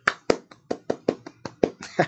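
One person clapping his hands in quick succession, about five claps a second, in approval.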